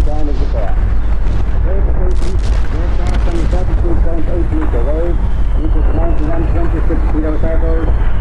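A voice speaking in the manner of an old radio broadcast, laid over a deep, steady low rumble from a dark-ambient drone. A faint falling whistle runs through the second half.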